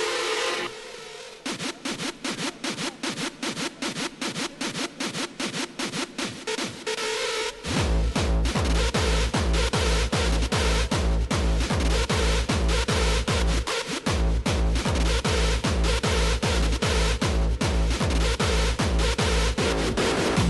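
Early hardstyle dance music from a DJ set: a steady kick pattern with little bass starts about a second and a half in, and the full heavy bass kick drops in about eight seconds in, with a brief break just before halfway through.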